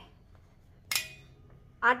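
A single sharp tap about a second in, as hands tuck a damp cotton napkin over a ball of dough in a steel plate. The rest is quiet until a woman starts speaking at the very end.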